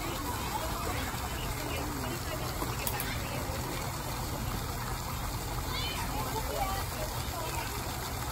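Steady rush of a water jet spraying from a rock feature and splashing into a pool, with indistinct voices of people talking over it.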